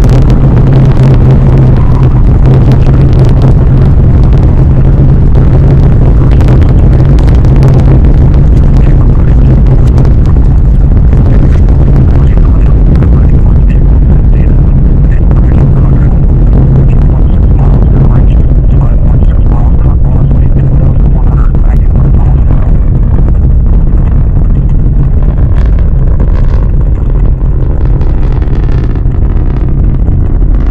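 Atlas V 551 rocket at liftoff and ascent, its RD-180 main engine and five solid rocket boosters making a very loud, steady rumble with crackling. The crackle and high end thin out over the last several seconds as the rocket climbs away.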